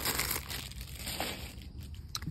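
Clear plastic packaging crinkling as it is handled, loudest at the start and dying away within about a second.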